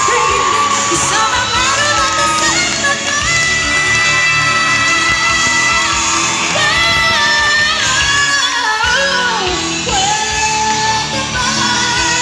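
A woman singing a ballad live into a microphone over amplified band accompaniment, holding long notes that slide from one pitch to the next.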